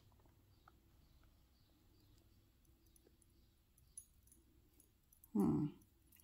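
Quiet room with a faint steady hum and a few small clicks, then a short pitched vocal sound near the end.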